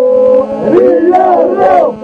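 A group of men singing Albanian Lab polyphony, with a steady low drone held under the lead voices. The upper voices hold a long note, then about halfway through break into several overlapping, gliding, ornamented lines.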